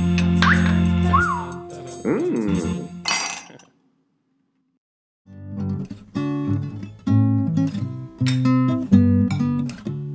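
Music: a short jingle with sliding tones stops about three and a half seconds in, and after a second or so of silence, plucked guitar music with separate notes begins.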